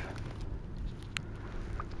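Wind rumbling on the microphone in a field, with faint rustling and a sharp click about a second in as a gloved hand works through loose soil and stubble at a dig hole.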